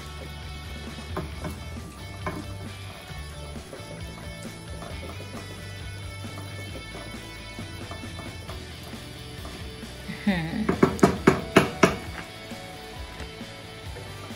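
Background music with a steady low line runs under soft stirring of shredded courgette in a frying pan with a wooden spatula. About ten seconds in comes a quick run of louder, sharp strokes.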